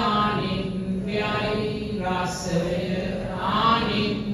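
A man's voice chanting a Buddhist Pali recitation in long, held notes, with short breaks between phrases.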